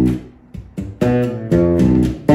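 Fretless six-string electric bass playing a slow line of single plucked notes, the B minor 7 flat 5 chord tones of B Locrian. One note rings on at the start, then about four more are plucked in turn, each left to ring.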